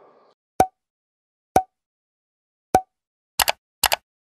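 End-screen animation sound effects: three short pops about a second apart, then a quick run of paired clicks near the end.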